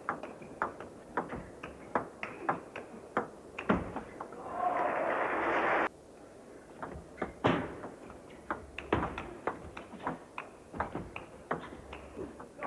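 Table tennis ball clicking off the rackets and the table through a rally, a sharp click every few tenths of a second. About four seconds in, a burst of crowd applause follows the point and cuts off suddenly, then a second rally of ball clicks.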